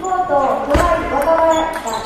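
Table tennis rally: a celluloid-type ping-pong ball clicking sharply off rubber bats and the tabletop a few times, echoing in a large gym hall, over a public-address announcer's voice.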